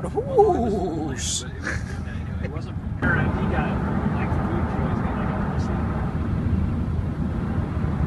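Steady road and engine rumble inside a moving vehicle's cabin at highway speed. A voice and laughter in the first couple of seconds, and the rumble steps up slightly louder about three seconds in.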